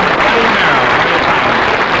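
Studio audience applauding at the end of a performance, a steady dense clapping with some voices mixed in.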